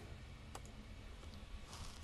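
Quiet room tone with a faint single click about half a second in and a brief soft hiss near the end.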